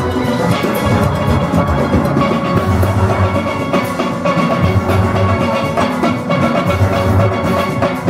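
A full steel orchestra plays continuously: many steel pans are struck with rubber-tipped sticks. The deep booming notes of the bass pans sit close to the microphone, under the lead pans' ringing melody, and drums keep the beat.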